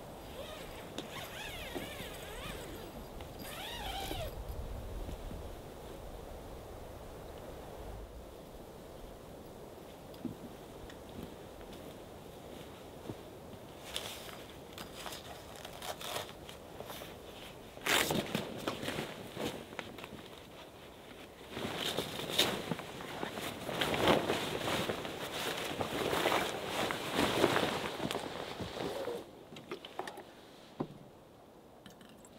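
The canvas and mesh walls of an awning room are being handled and opened up: fabric rustling with clicks and fastener sounds. These are loudest and busiest in the last third. A few short gliding animal-like calls come in the first few seconds.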